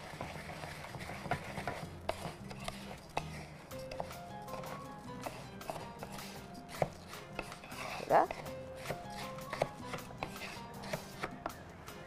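Light background music with a run of melodic notes, over repeated short clicks and scrapes of a spoon stirring rice in a cooking pot.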